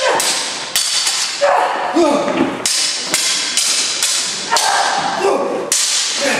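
Stage-combat longswords clashing about ten times in quick, uneven succession, each hit a sharp clang with a brief ring.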